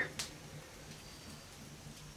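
Sugar poured from a small earthenware cup into a pot of cream: a faint, even hiss, with a light tap just after the start.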